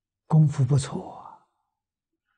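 Only speech: an elderly man's voice speaking one short phrase in Mandarin, starting about a third of a second in and trailing off after about a second.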